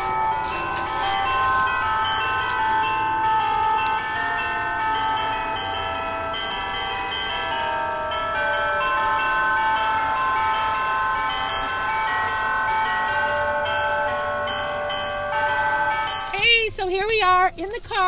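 Church bells being played as a melody, one note after another, each note ringing on under the next. Voices come in near the end.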